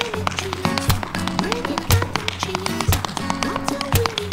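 Tap shoes striking a wooden floor in quick, dense runs of taps, over instrumental acoustic backing music with a heavy beat about once a second.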